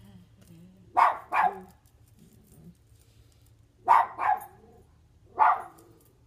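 A dog barking: five short barks, two quick pairs followed by a single bark near the end.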